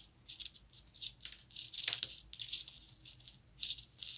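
Metal knitting needles clicking and scraping against each other as stitches are knitted: a faint, irregular run of small high clicks.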